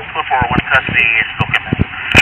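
Speech: voices talking during a scuffle, picked up on a body-worn camera's microphone, with a few sharp clicks.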